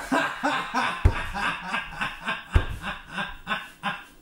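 A person laughing in a rapid string of short pulses, about four or five a second, with two low thumps about a second in and again about two and a half seconds in.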